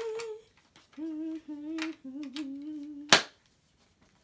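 A girl humming a tune in short held phrases, then one sharp, loud snap about three seconds in, from a hard-shell glasses case snapping shut: "that is loud".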